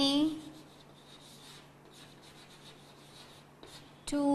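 Chalk writing on a blackboard: a run of faint, scratchy strokes as words are written out.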